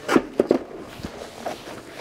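A few light knocks and clunks as a plastic face visor is taken off and set down on a surface: several in the first half second and one more about a second in.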